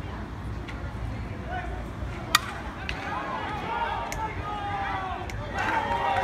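A single sharp crack of a bat hitting a pitched baseball, a little over two seconds in. Players and spectators shout and cheer after it, louder near the end.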